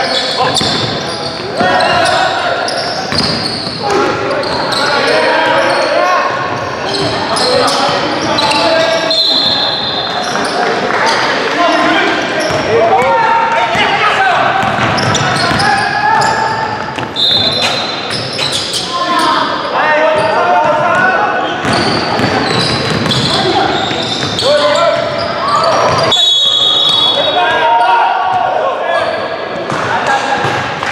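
Indoor basketball game: voices calling out over a basketball bouncing on the hardwood court, echoing in the hall. Three brief high-pitched squeaks come about a third of the way in, past the middle and near the end.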